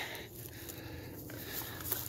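Faint rustling of footsteps on dry leaf litter and twigs while walking on uneven ground, with a faint steady hum underneath.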